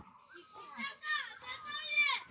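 A young child's high-pitched voice in short cries that bend up and down in pitch, growing louder near the end, with a sharp click right at the start.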